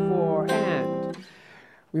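Archtop jazz guitar picked through a short rhythm figure; the last notes ring and fade out just over a second in.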